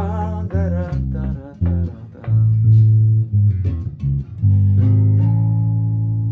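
Electric bass, played fingerstyle, picking out a slow bolero bass line: a run of short plucked low notes, then one long held note for the last second and a half or so.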